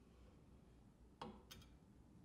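Near silence, broken a little after a second in by two faint clicks as the hinged metal lid of a ToAuto electric melting furnace is shut over the crucible.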